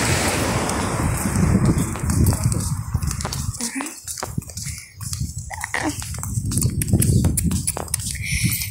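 Footsteps on a paved walkway, heard as a run of short clicks in the second half, over a low rumble of wind on the phone's microphone.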